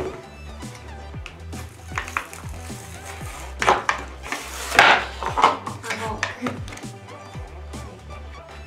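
Plastic blister packaging crinkling and clattering in bursts as a plastic slime tub is pulled out of its card-backed pack, loudest about halfway through, over background music with a steady beat.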